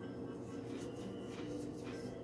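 Faint chewing of a crunchy oatmeal raisin cookie with dried-out, hard raisins: a few soft, irregular crunches and clicks over a low steady hum.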